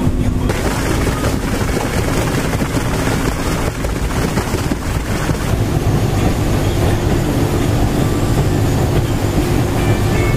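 Boat running at speed across open water: steady outboard motor noise mixed with rushing water along the hull and wind, loud and unbroken.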